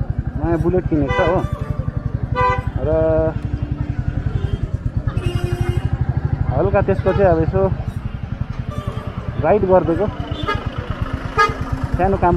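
Royal Enfield Bullet's single-cylinder engine running at low speed as the motorcycle crawls through slow street traffic, a steady low beat throughout, with people's voices over it at times.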